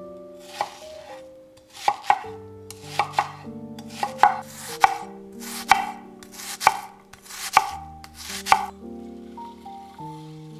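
Chef's knife chopping an onion on a wooden cutting board: about ten crisp cuts, roughly one a second, each a short crunch through the onion ending in a sharp tap of the blade on the board.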